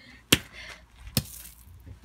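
Hammer striking a Fitbit lying on gravel: two sharp blows a little under a second apart. The Fitbit's case is splitting open under the blows.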